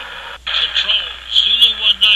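A man's voice over a thin, static-laden radio link, the words unclear, with the signal cutting out briefly just under half a second in.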